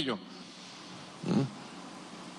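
A pause in a man's speech into a microphone: faint steady room hiss, broken a little past the middle by one short, throaty vocal sound from the speaker.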